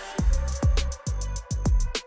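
Electronic background music with a regular beat. Deep hits come a little over a second apart with quick ticks between them, and the beat starts a fifth of a second in.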